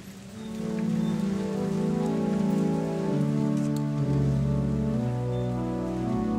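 Pipe organ playing the closing postlude: sustained chords that swell in over the first second, moving step by step, with low bass notes joining about four seconds in.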